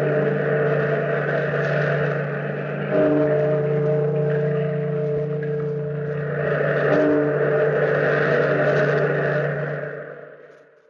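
A deep bell tolling three times, about three to four seconds apart, each stroke ringing on into the next, over a swelling and ebbing wash of surf; it fades out at the end.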